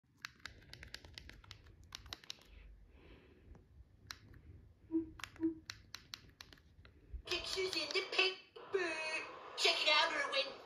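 A string of sharp, irregular clicks, with two short low beeps about halfway through. From about seven seconds in, cartoon dialogue plays from the television.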